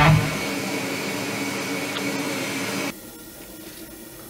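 A steady whir of a running machine, like a fan, that cuts off abruptly about three seconds in, leaving a faint hiss.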